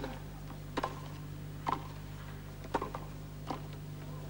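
Tennis ball struck by rackets during a point: a serve at the start, then a rally of sharp pops about a second apart. A steady low hum runs underneath.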